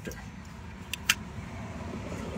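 Two light, sharp clicks a split second apart, about a second in, from plastic electrical connectors being handled, over a steady low background noise.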